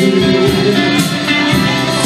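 Live band music played through PA speakers: an electric guitar strummed in an instrumental passage, with no singing.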